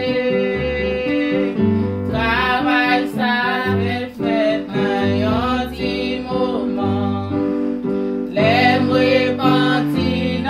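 Two women singing a worship song together over guitar-led musical accompaniment with a steady bass line.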